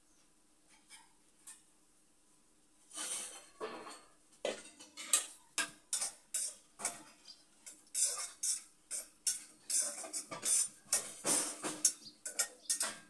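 Steel kitchen utensils clinking and scraping, ladle against metal, in quick irregular strokes that start about three seconds in and continue, preceded by a couple of faint clicks.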